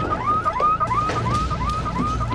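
Electronic alarm sounding: a short rising chirp repeated rapidly, about four times a second, over a low steady hum.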